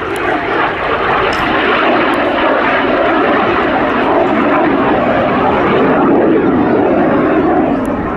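The single Armstrong Siddeley Viper turbojet of a BAC Jet Provost T3A, heard as loud, steady jet noise while the trainer flies its display. The noise builds over the first couple of seconds and eases slightly at the very end.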